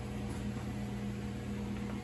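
Steady low hum with an even hiss, unchanging throughout.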